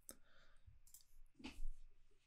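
Faint clicks from operating the computer, with a louder click about one and a half seconds in.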